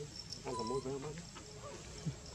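A short, low vocal sound with a wavering pitch, under a second long, starting about half a second in.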